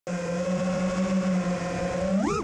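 5-inch FPV freestyle quadcopter's brushless motors and propellers running at a steady cruise throttle, giving a steady pitched hum.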